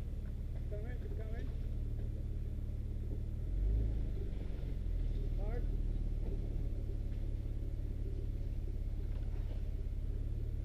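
Nissan Xterra's engine running low and steady as the truck crawls slowly over rocks, with a brief louder low rumble about three and a half seconds in.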